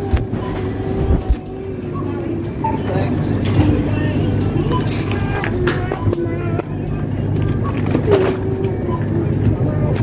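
Supermarket checkout ambience: a steady low hum with scattered knocks and rustles as groceries are lifted out of a trolley onto the counter, over background voices and music.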